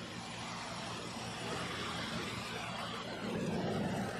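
A car approaching, its engine and tyres growing louder near the end.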